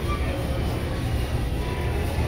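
Warehouse-store background noise: a steady low rumble with faint music playing underneath.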